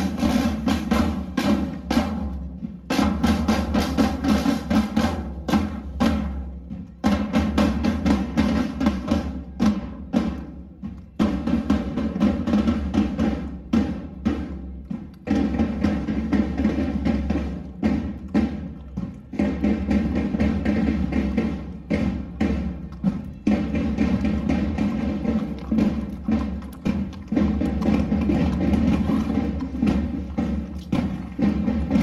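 Several medieval-style painted side drums beating a marching rhythm with frequent rolls, over a steady droning tone that runs underneath.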